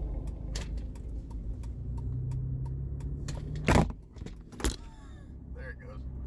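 Low hum inside a car in the rain, with scattered raindrops tapping on the windshield and roof. Two louder thumps come about four and five seconds in.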